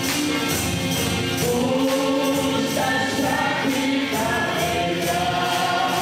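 A hymn sung by several voices through a church sound system, with a percussion group keeping a steady beat and tambourines shaking on every stroke.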